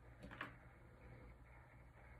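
Near silence: a faint steady low hum, with one faint brief rustle or click about half a second in.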